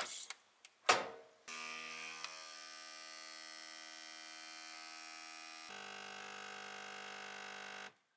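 A capsule espresso machine's lever clicks shut, then its pump runs with a steady buzzing hum while brewing; a few seconds later the hum shifts to a lower pitch, and it cuts off suddenly near the end.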